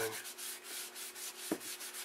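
A cloth rag rubbing back and forth along the flat plastic-jacketed cable of a Predicta Tandem television, scrubbing off grime with a cleaner: a quick, even run of rasping wiping strokes, with a light knock about one and a half seconds in.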